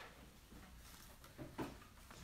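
Near silence: room tone with a low steady hum and two faint, short knocks about a second and a half in.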